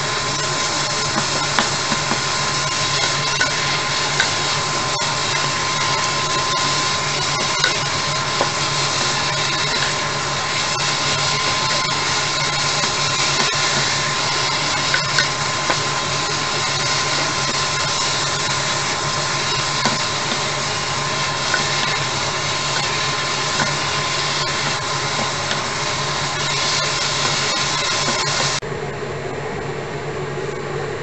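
Kimchi and ground chicken sizzling in a frying pan while a wooden spatula stirs and scrapes it, with small clicks, over a steady hum. The sizzle stops near the end.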